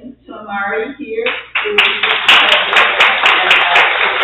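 A small congregation applauding, starting about a second and a half in, after a few spoken words. One pair of hands claps sharply and steadily, about four claps a second, above the rest of the applause.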